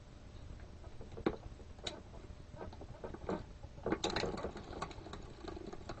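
Light metallic clicks from a hand-cranked circular sock machine's needles and latches being handled, a few separate clicks at first, then a denser clatter about four seconds in.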